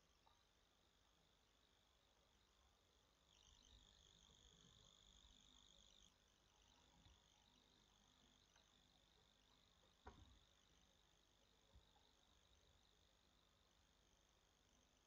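Near silence: faint room tone with a thin high-pitched hum that swells for a couple of seconds, and a few soft clicks.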